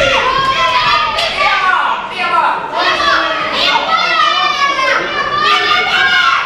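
Ringside voices shouting at the boxers during a bout: several raised, high-pitched voices calling out without pause, overlapping each other.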